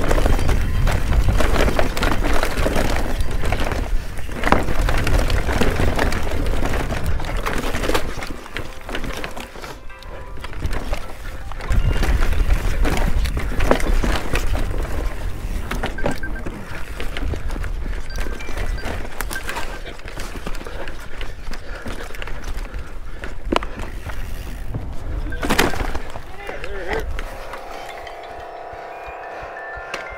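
Mountain bike descending a rough forest trail at speed: wind on the microphone, tyre roar and the bike rattling over roots with many sharp knocks. Underneath, a phone in a pocket plays ringtones and music, muffled. The riding noise drops off a few seconds before the end as the bike slows.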